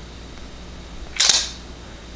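A single short, sharp hissing mouth sound about a second in, a quick puff or click of breath through the lips or teeth, over a quiet small room.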